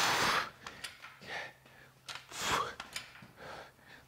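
A man breathing hard from exertion, with forceful exhales: a loud one at the start and two fainter ones about a second apart.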